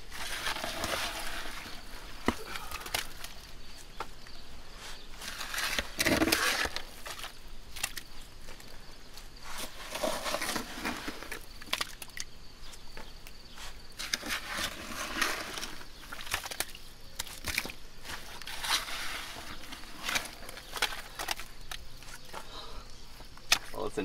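A shovel digging in waterlogged outhouse-pit muck: a wet scoop and scrape about every four seconds, with sharp clicks of the blade striking hard bits in the mud.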